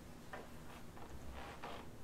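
Quiet room tone with a low hum and a few faint, irregular ticks.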